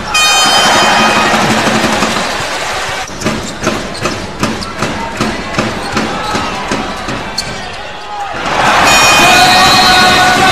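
Basketball arena crowd cheering loudly, then a ball bouncing in a steady dribble on the hardwood court, and the cheering surges again near the end.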